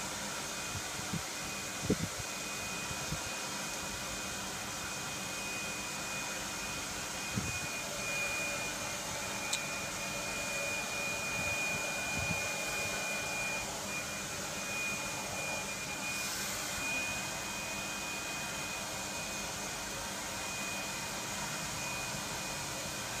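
Steady machine-like background noise with a thin, steady high whine, and a few faint short knocks in the first half.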